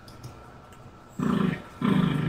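A person clearing their throat: two low, rasping, voiced sounds, the first starting a little over a second in and the second running on past the end.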